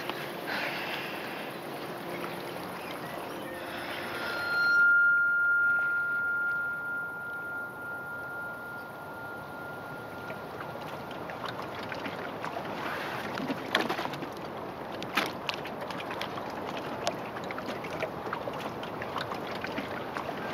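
Lake water lapping and splashing, with sharper splashes in the second half. A single steady high ringing tone rises in about four seconds in and holds for several seconds before fading.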